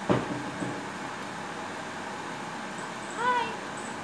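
A short knock right at the start, then about three seconds in a single short meow from a domestic cat, rising and falling in pitch.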